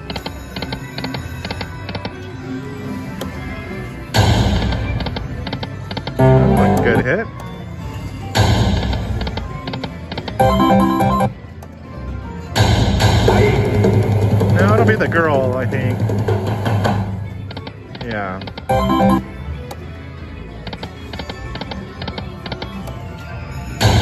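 Aristocrat video slot machine playing its electronic spin and win sounds over several spins in a row: bursts of melodic jingles with rapid clicking and quick rising and falling tones, each lasting a few seconds and dropping back between spins.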